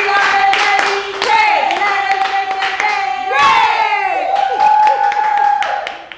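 Women singing the candy shop's short welcome song in long held notes, with steady hand claps keeping time; it fades out near the end.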